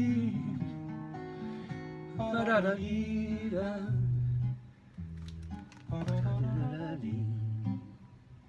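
Fado played on guitars: plucked notes with a wavering sung phrase about two and a half seconds in, and sparser guitar for the rest.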